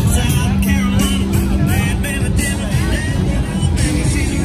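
Loud music spilling out of bars onto a crowded street, mixed with people's voices and passing cars.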